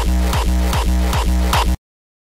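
Distorted hardstyle kick drum looping at 150 BPM in a DAW, about five hits, each a punchy attack that drops in pitch into a long pitched low tail. Playback stops abruptly near the end.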